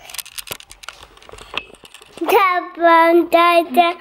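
A small girl singing a string of short, high, sing-song notes, starting about halfway in. Before that, soft clicks and rustles come from the phone being handled close to the microphone.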